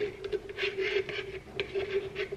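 Spoon scraping around the inside of a nearly empty mayonnaise jar in a few short strokes, over a steady low hum.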